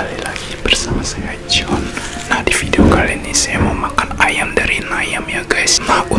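A man whispering into a close microphone in a continuous stream of soft speech, with crisp hissing s-sounds.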